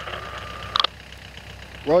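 An engine idling with a steady low hum, with a short sharp click a little under a second in.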